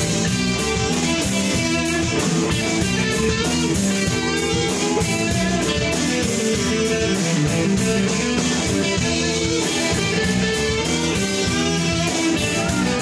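A live band playing: electric guitar over a drum kit, with the drums keeping a steady beat of about four strokes a second.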